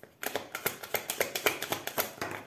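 A deck of oracle cards being shuffled by hand: a quick run of crisp card flicks, about ten a second, starting a quarter-second in.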